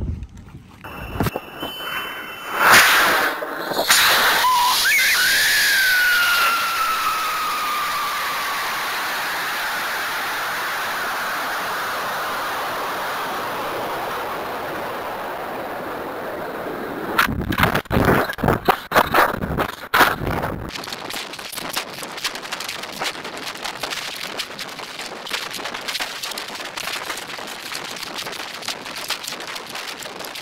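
Onboard-camera sound of a LOC Patriot high-power rocket flying on a J340M motor. A sudden loud start about three seconds in gives way to a loud rush that slowly fades as the rocket coasts, with a whistle falling in pitch. Around seventeen seconds in comes a cluster of sharp bangs near apogee, the ejection and parachute deployment, and after it steady wind buffeting as the rocket descends.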